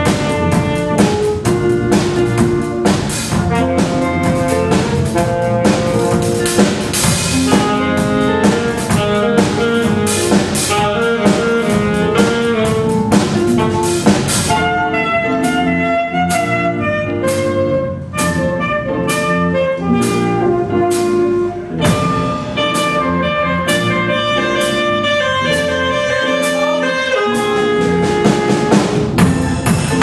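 Jazz big band playing a tune: saxophones and brass over drum kit, bass and guitar. About halfway through the cymbals and drums drop back under the horns, and the full band returns near the end.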